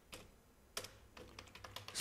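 Typing on a computer keyboard: faint separate keystroke clicks, one just after the start and a few a little before the middle, then a quicker run of keystrokes in the second half.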